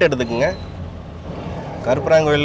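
A man's voice trails off in the first half second and starts again near the end; in the gap, the low, steady rumble of a car's engine and tyres on the road, heard from inside the cabin while driving.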